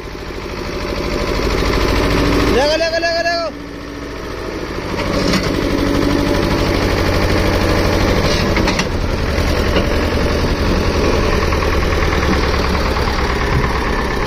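Escort tractor's diesel engine running hard under load as it works to pull free of the mud, building up over the first couple of seconds, easing briefly, then pulling steadily again. A man shouts once about three seconds in.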